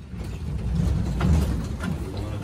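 Elevator doors sliding open: a low mechanical rumble that swells and fades, with a few sharp clicks from the door mechanism.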